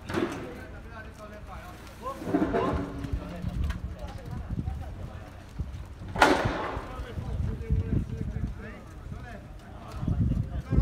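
Several people talking and calling to one another, with one voice much louder about six seconds in, over a low rumble of wind on the microphone.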